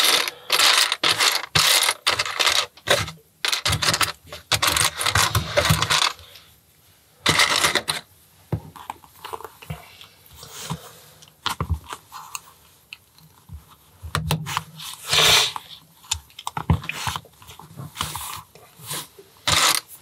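Loose plastic LEGO bricks clattering as a hand rummages through a pile of them for about six seconds. After that come scattered single clicks and rustles as pieces are picked out and pressed onto white plates.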